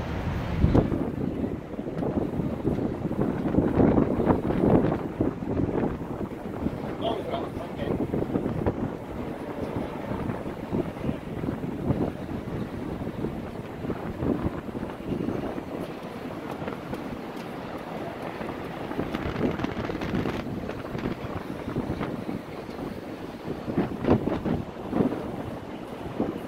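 Wind buffeting the microphone in an uneven low rumble, with indistinct voices of people around.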